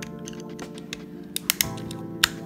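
Background guitar music plays steadily, with a few quick sharp clicks near the end as LEGO Technic plastic parts are handled and pressed together on the wheel and motor.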